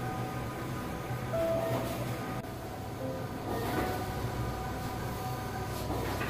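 Skyjet 512 wide-format solvent printer running while it prints, its printhead carriage sweeping across the media and back about every two seconds over a steady hum of motors and fans.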